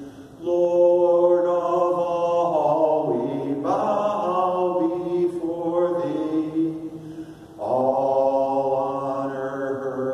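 A man singing a slow, chant-like hymn, holding each note for a second or more, with short breaks near the start and about seven and a half seconds in.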